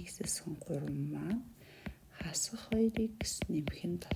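Soft, half-whispered speech, with short sharp clicks of a stylus tapping and writing on a tablet's glass screen.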